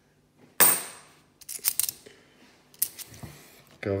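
50p coins clinking against each other as they are handled: a sharp ringing clink about half a second in, then a few lighter clicks around one and a half and nearly three seconds in.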